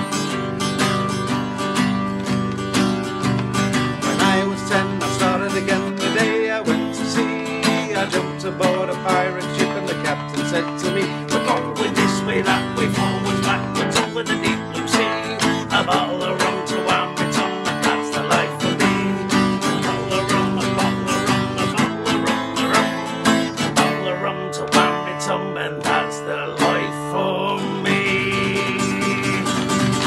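Acoustic guitar strummed in a steady rhythm through changing chords, playing the accompaniment to a sea shanty.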